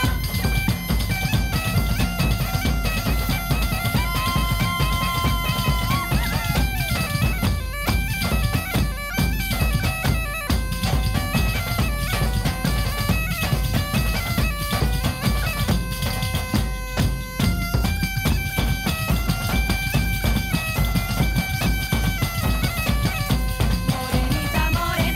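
Instrumental folk passage: a bagpipe plays a melody of held notes that step up and down over frame drums and a large bass drum beating steadily, with no singing.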